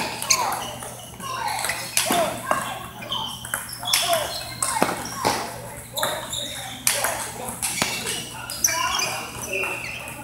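Table tennis balls clicking off rackets and tables in rallies: sharp, irregular clicks, several a second, from this table and the neighbouring ones, with voices in the background of a large hall.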